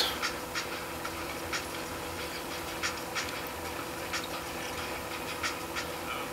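Audio of an online BMX video playing through an Acer C7 Chromebook's built-in speakers: a steady hum with soft, irregular clicks.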